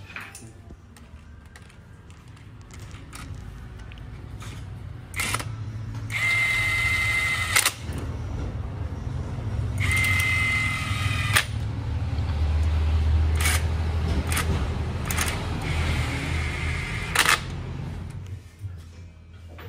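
Metallic clicks and clacks from a hand tool working the valve springs of an aluminium cylinder head during reassembly, with two whirring mechanical bursts of about a second and a half each and a low rumble underneath.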